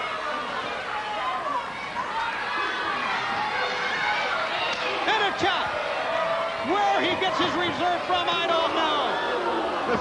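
Live arena crowd yelling and cheering, many voices overlapping, with a couple of sharp hits about five seconds in.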